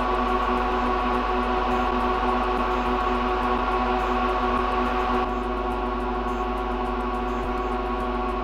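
Lenovo System x3650 M4 rack server's cooling fans running fast during firmware start-up: a steady whine of several tones over a rushing hiss. About five seconds in the hiss drops slightly.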